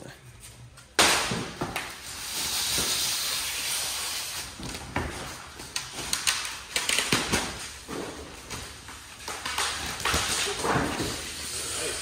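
Cardboard shipping crate walls being lifted off a side-by-side and moved: a sudden knock about a second in, then scraping and rustling with scattered knocks and bumps.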